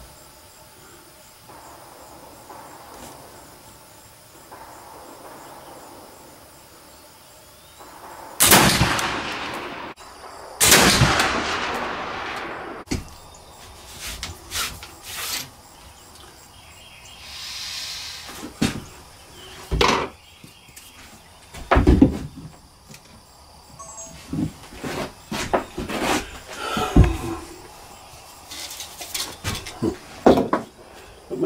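Flintlock muzzleloading rifle firing black powder: a loud report about 8 s in, then a second loud burst about two seconds later, each fading away slowly. After that come scattered knocks and clatter as the rifle is handled upright at the bench.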